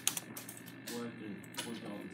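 Computer keyboard keys being pressed: several separate keystroke clicks.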